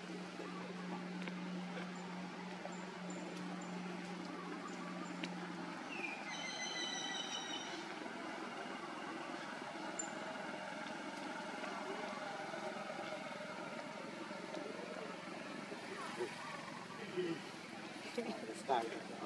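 Outdoor background noise with faint voices. A steady low hum fades out about six seconds in, and a high-pitched call with a falling start lasts about two seconds.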